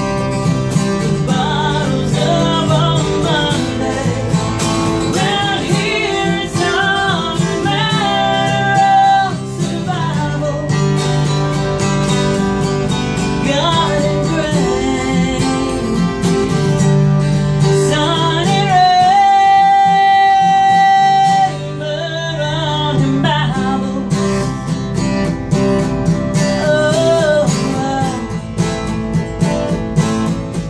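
A woman singing a country song with acoustic guitar accompaniment, holding one long note about two-thirds of the way through.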